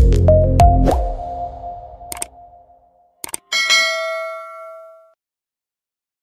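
Intro music with deep bass and sharp percussive hits, fading out over the first two seconds. After a couple of short clicks, a bright ringing chime sounds about three and a half seconds in and dies away over about a second and a half.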